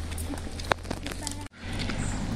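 Low, steady rumble on a phone microphone outdoors, with one sharp click about two-thirds of a second in; the sound cuts out abruptly at an edit about a second and a half in.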